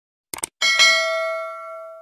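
YouTube-style subscribe-and-notification-bell sound effect: a quick mouse double-click, then a bell ding that rings and fades over about a second and a half.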